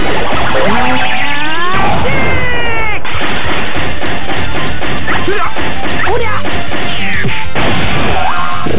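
Sound effects from a CR Osomatsu-kun pachinko machine during a reach on 5. A string of whistling pitch glides, some rising and some falling, plays over busy game music, with sudden cuts about three seconds in and again near the end.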